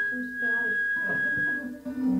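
A fiddle, guitar and accordion trio holding a single high note steady for about a second and a half over a few fainter lower notes. The sound drops away briefly near the end.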